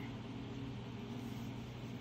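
Quiet room tone: a steady low hum with a faint even hiss.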